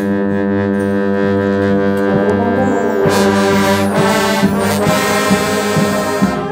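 Brass band playing sustained chords over a held low bass note. The harmony shifts about halfway through and short percussive accents join in.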